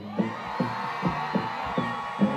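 Live band playing a dancehall backing track with a steady drum beat and a held note over it, with crowd noise from the audience.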